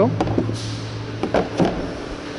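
Carpet-covered side panels of a subwoofer enclosure being pulled off and handled, held on by hidden magnets: a few light knocks and a brief scrape.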